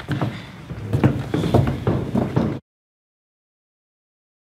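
A dense run of knocks and thumps on a hollow wooden set that cuts off abruptly into dead silence about two and a half seconds in.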